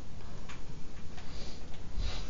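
A few faint, unevenly spaced ticks over steady room noise.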